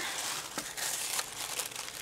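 Paper and tissue paper crinkling and rustling with many small crackles as items are handled in a cardboard box.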